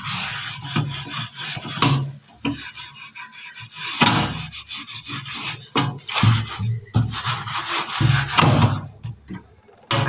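A cloth scrubbing a tarnished silver tray through a white cleaning paste, in rapid back-and-forth rubbing strokes that ease off briefly about two seconds in.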